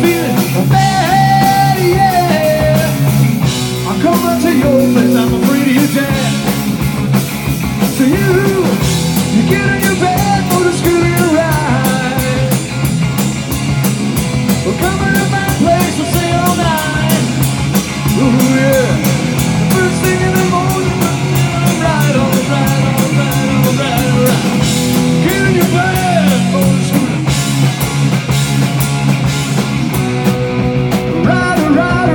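Live rock band playing: electric guitars, electric bass and drum kit, loud and steady, with a lead line that bends up and down in pitch over the beat.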